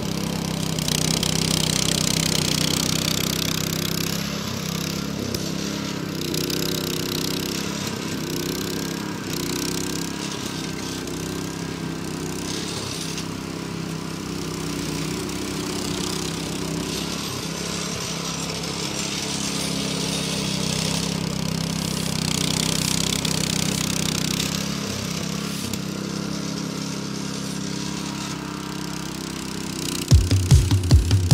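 Small gasoline engine of a Classen TR-20 power rake (dethatcher) running steadily while its reel of tines rakes thatch out of the lawn, the hiss of the reel swelling and fading as it is pushed along.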